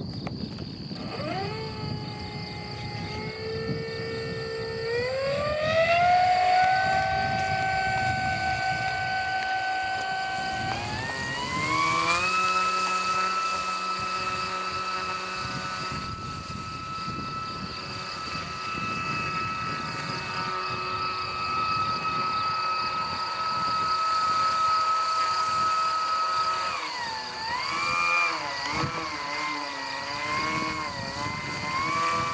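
Radio-controlled seaplane's motor and propeller whining as the throttle is opened in steps, then held high while the hull runs across the water throwing spray. Near the end the throttle comes back and the pitch drops and wavers, over the hiss of water.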